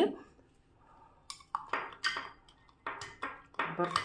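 Ice cubes tipped off a ceramic plate into a glass mug of drink: a series of short clinks and knocks starting about a second in.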